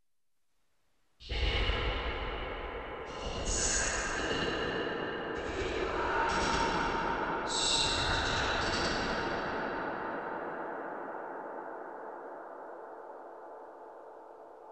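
Whispered vocal track played through the UAD Lexicon 224 digital reverb plug-in on its Atmosphere preset. Short breathy whispers are smeared into a long, deep reverb wash that slowly dies away over several seconds. It starts abruptly after about a second of silence.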